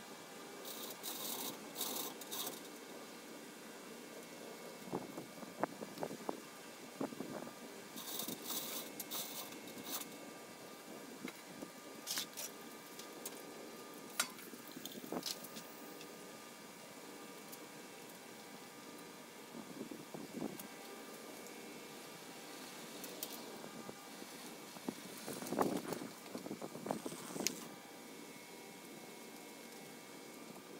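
Scattered metallic rattles, clinks and knocks from a hand chain hoist and its chain, with scrapes as the bare VW chassis is moved out from under the hoisted body. Bursts of rattling come near the start and again about eight seconds in.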